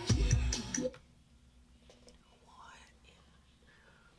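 R&B song with singing, cut off suddenly about a second in, leaving a quiet room with faint whispering.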